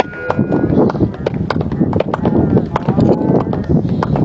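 Spectators clapping in scattered, uneven claps, several a second, with voices calling out: applause for a goal just scored in a youth soccer match.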